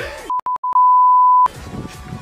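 Edited-in 1 kHz bleep tone of the censor-bleep kind: three short beeps and then one long beep, with all other sound cut out while it plays.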